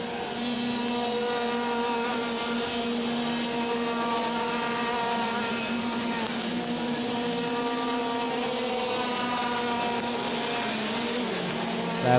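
IAME X30 125cc two-stroke racing kart engines running on the circuit, a steady engine note whose pitch drifts gently up and down as the karts lap.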